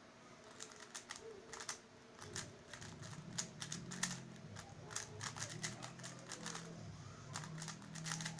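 MF3RS stickerless 3x3 speed cube being turned rapidly in a speedsolve: a quick, uneven run of plastic clicks and clacks that starts about half a second in.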